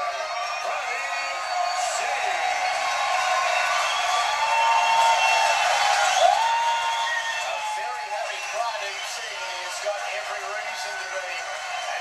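Arena crowd cheering, shouting and clapping at a boxing winner's announcement, many voices overlapping. It swells to its loudest about halfway through, then eases off.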